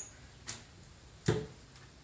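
Two knocks against quiet kitchen room noise: a light click about half a second in, then a louder thud a little under a second later.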